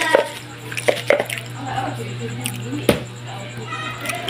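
Light clicks and knocks of kitchen containers and utensils being handled, with one sharper knock about three seconds in, over a steady low hum.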